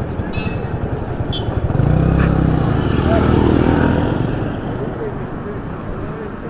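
A motor vehicle's engine passes close by, growing louder about two seconds in and fading after about four seconds, over steady street traffic noise.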